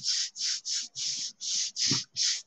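A hand rubbing over the back of a sheet of paper laid on a gelli plate, burnishing it to lift an acrylic print. About six quick strokes, roughly three a second.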